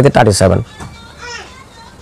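A man's voice speaking briefly, then a pause in which faint, high children's voices are heard in the background about a second in.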